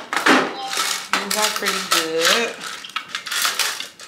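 Clear plastic organizer drawers and a plastic tray of disposable lash wands being handled and shuffled on a cart: repeated light plastic clattering and knocking.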